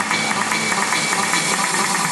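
Motorboat engine running steadily at speed while towing water skiers.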